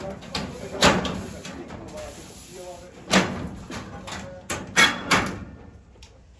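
Underdeck ceiling panel being pushed up and fitted into its carrier rails: a series of sharp knocks and clacks, about a second in and again from about three to five seconds in, as the panel is locked in place.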